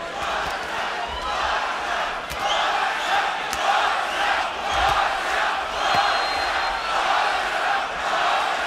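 Boxing arena crowd shouting and chanting, the noise swelling and falling in a rhythm of about two surges a second, with a few faint sharp clicks.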